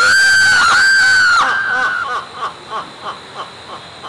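A man's loud, high-pitched, drawn-out cry lasting about a second and a half, running straight into a string of short laughing bursts that fade away: a theatrical villain's laugh. A steady high insect drone runs underneath.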